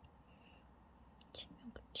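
Quiet room tone, then a woman's soft, whispery voice beginning about a second and a half in.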